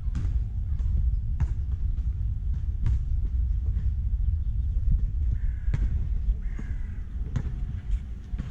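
Two short, harsh animal calls, about five and six and a half seconds in, over a steady low rumble, with a few light clicks scattered through.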